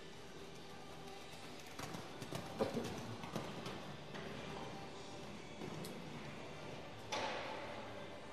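A pony's hoofbeats on arena sand, with a cluster of louder thuds about two to four seconds in as it jumps a fence. Quiet background music plays under it, and there is one sharper knock a second before the end.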